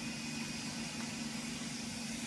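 A pressure washer running steadily: a constant motor hum with a hiss above it.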